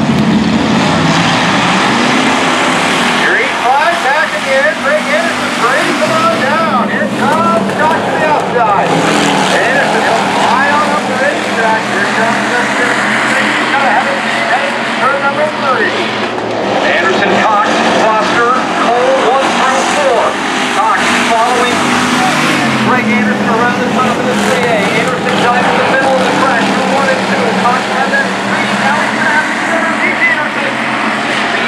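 Several hobby stock race cars running laps on a dirt oval, their engines swelling and fading as the field comes around, mixed with steady chatter from spectators close by.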